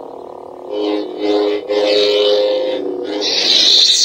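Lightsaber sound font played through the hilt's small speaker: an ignition about half a second in, then a steady electric hum, and a louder, brighter burst near the end as the blade sound shuts off.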